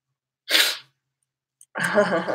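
A woman's single short, sharp burst of breath about half a second in, then she starts to laugh near the end.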